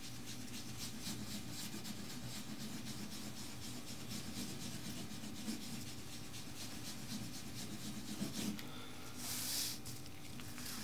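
A small sponge loaded with wax dye rubbed back and forth over textured crust alligator leather in repeated soft strokes, blending one colour into the next. Near the end comes a louder, brief swish.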